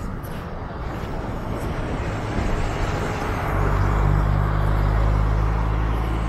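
A motor vehicle passing close by: engine hum and tyre noise build up, are loudest about four to five seconds in, and begin to ease near the end.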